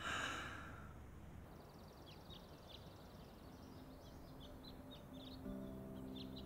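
A brief swoosh at the start, then small birds chirping in quick, short, high notes throughout. Soft background music with sustained held notes comes in about halfway through.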